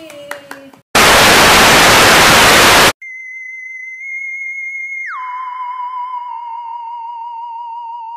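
A loud burst of static-like white noise lasting about two seconds, then a steady electronic tone with a slight wobble that drops sharply in pitch about two seconds later and holds there: a mock news-alert sound effect.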